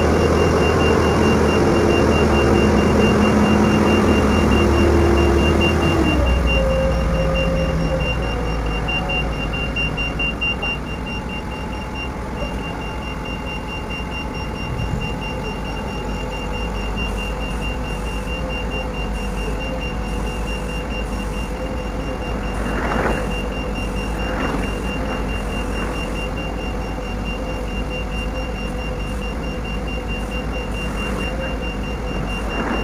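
Heavy mobile crane's diesel engine and hydraulics running under load, holding steady tones for about six seconds, then settling to a lower steady run, during counterweight installation. A high steady warning tone sounds throughout, and two short knocks come a little past two-thirds of the way in.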